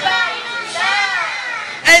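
A woman's high-pitched voice performing into a microphone, holding long notes that arch up and down, with a short loud burst just before the end.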